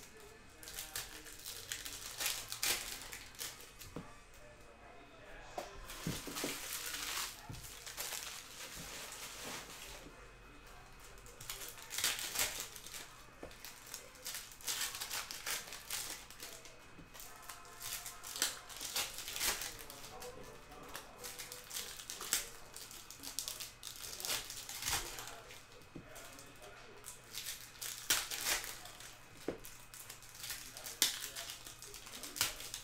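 Foil wrappers of O-Pee-Chee Platinum hockey card packs crinkling in the hands as packs are opened, in short, irregular bursts of crackle.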